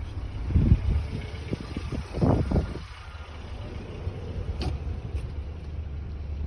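Steady low rumble of an idling car, with a few dull knocks about half a second and two seconds in, and a single sharp click near the end.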